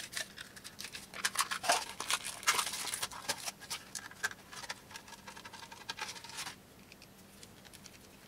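Handling noises of a small plastic toy and its stand: irregular clicks and scratching as a small screwdriver works the screws. The sounds stop about six and a half seconds in.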